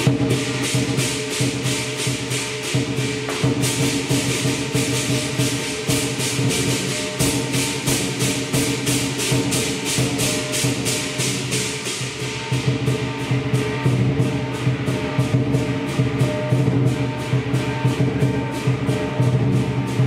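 Southern lion dance percussion: the lion drum, cymbals and gong played together in a steady, fast beat of about four strikes a second.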